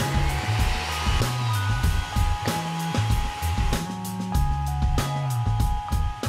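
Countertop blender running steadily, its motor and blades puréeing roasted guajillo chiles and red bell pepper into a sauce.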